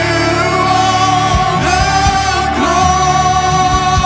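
A live church worship band, with electric guitars, drums and keyboard, and singers holding long sustained notes on a hymn chorus.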